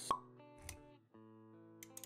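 Intro music with sound effects: a short pop about a tenth of a second in, a low thump a little later, then soft music with held notes.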